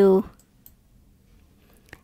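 The last syllable of a spoken word, then a quiet pause with a faint click and, near the end, a sharper single click of a computer mouse.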